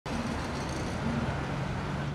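Steady road traffic noise: a continuous wash from cars on a multi-lane road, with a faint low hum under it.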